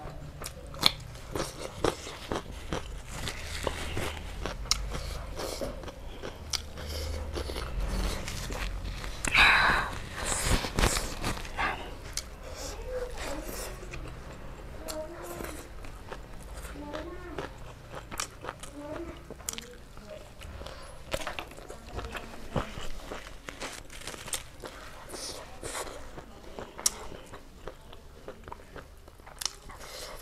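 Close-miked eating by hand: crisp crunches of raw cucumber and wet chewing of rice and curry, with many sharp mouth clicks. A louder burst of crunching comes about ten seconds in.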